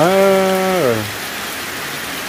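Steady rain falling on muddy ground and thatched roofs. Over the first second a person's voice holds one long drawn-out vowel and trails off, leaving only the rain.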